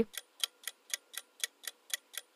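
Ticking clock sound effect counting down a quiz answer timer: short, even ticks at about four a second.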